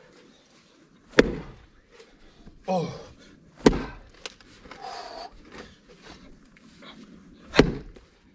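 Axe blade striking a gnarled tree stump three times, each blow a sharp thunk, about two to four seconds apart. The stump is not splitting.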